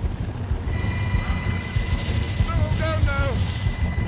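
Helicopter hovering close overhead: a continuous low rotor throb, with a steady high whine from the turbine setting in about a second in. A brief vocal cry past the middle.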